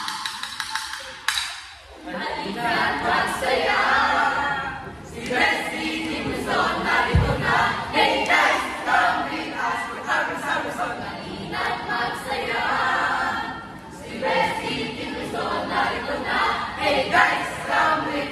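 A group of voices singing together in chorus with no instruments, continuing throughout, with a single low thud about seven seconds in.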